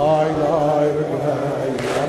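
A man's voice chanting a drawn-out Azerbaijani Shia mourning lament (nohe), holding long notes that waver at first and then steady, with a brief hiss near the end.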